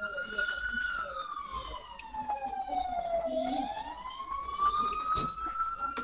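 An emergency-vehicle siren wailing in a slow cycle, its pitch falling from about a second in and rising again from a little past three seconds, heard over a video call. A few faint clicks and a low murmur of voices sit underneath.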